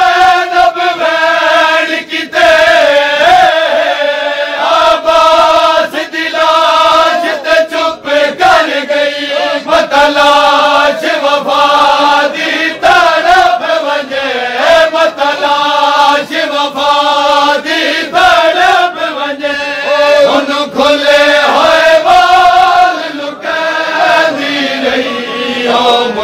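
Crowd of men chanting a Punjabi noha lament in a steady melodic refrain, over repeated slaps of hands on chests (matam).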